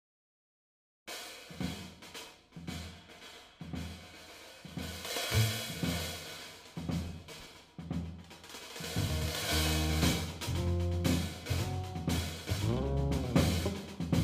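Jazz drum kit played with sticks, starting about a second in after silence: loose snare hits, cymbal washes and bass drum. A bass guitar joins with low sustained notes around nine seconds in, with a sliding note near the end.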